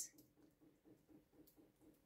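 Near silence, with a faint, soft, evenly repeating sound of a spoon stirring thick cream in a glass bowl, about five strokes a second.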